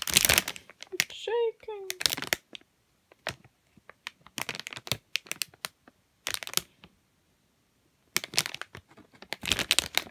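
Clear plastic bag around a plastic model-kit parts sprue crinkling and crackling in handled bursts, with short quiet gaps between them.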